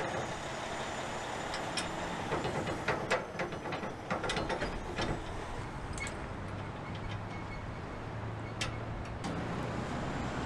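Steel ball mount being worked into a hitch extension's receiver tube: scattered metal clicks and clanks, mostly in the first half, over a steady low hum.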